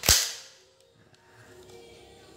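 Plastic magazine of a Glock 26 gel-blaster pistol, converted to 6 mm BBs, snapped home into the grip with one sharp click that dies away within half a second.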